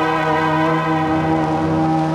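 Audio played back and manipulated by a Panda F321 tape repeater through an Obscura Altered Delay pedal: a loud, sustained drone with many steady overtones, held at one pitch.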